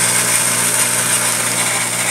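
Homemade 2"x72" belt grinder running steadily: an old washing-machine motor drives the abrasive belt over skateboard wheels, giving a constant low motor hum under the even hiss of the moving belt.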